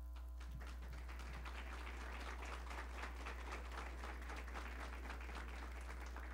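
Audience applauding, starting about half a second in and continuing steadily, heard faintly over a constant electrical mains hum.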